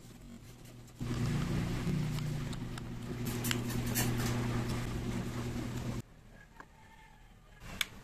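A steady low motor hum runs from about a second in and cuts off sharply about two seconds before the end. Under it are handling noises and sharp clicks as an AA battery is fitted into the plastic battery compartment of a battery-powered LED push light. Two sharp clicks come near the end.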